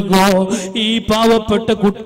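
A man chanting a religious recitation in a melodic voice, holding a steady pitch with small wavers and brief breaks.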